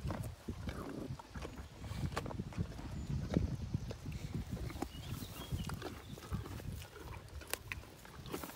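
Two dogs, a German shepherd and a small pup, sniffing and snuffling close up in the grass, with irregular small clicks and crunches as they nose out and pick up dropped carrot pieces.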